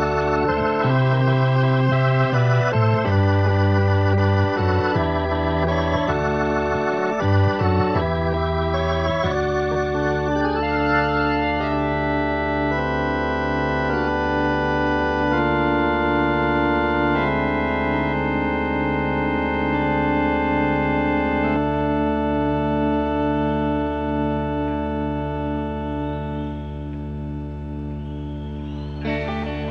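Solo organ playing slow sustained chords, changing every second or so at first, then held longer from about ten seconds in and growing a little quieter near the end.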